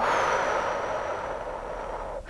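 A long, deep exhale through the mouth, a breathy rush that fades gradually over about two seconds.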